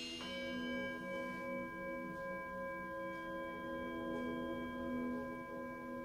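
Quiet passage of meditative music: a single bell-like tone struck just after the start rings on steadily with several high overtones, over a soft sustained low drone.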